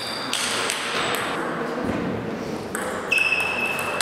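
Table tennis ball clicking on the table and paddles as a point is played: a series of sharp clicks, several of them ringing with a short high ping.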